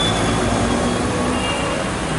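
Steady low rumble of road traffic, with faint background voices.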